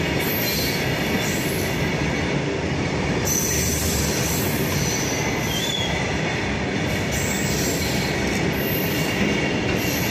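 Freight train of covered goods wagons rolling past at close range, a steady rumble and rattle of wheels on track with a high-pitched wheel squeal that comes and goes.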